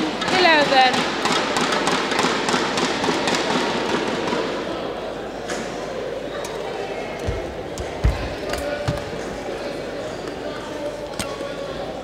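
Hall crowd noise dying away after the previous point, then a badminton rally: several sharp racket strikes on the shuttlecock and the low thuds of players' feet landing on the court.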